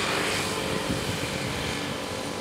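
Steady road traffic noise with a faint engine hum, easing slightly toward the end.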